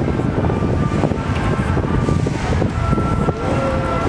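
Wind buffeting the microphone over a steady outdoor city rumble, with a few faint steady high tones.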